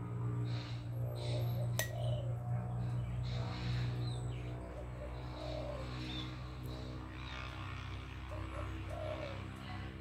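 Birds calling, with short dove-like calls recurring every second or two, over steady background music. One sharp click comes near two seconds in.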